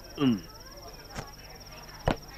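A cricket trilling steadily on one high, rapidly pulsing note. Just after the start there is a short falling vocal sound, like a grunt or sigh, and past the middle a faint click.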